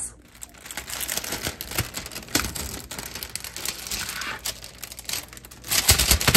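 Plastic food packaging crinkling and rustling as it is handled, with many small crackles and clicks that grow louder near the end.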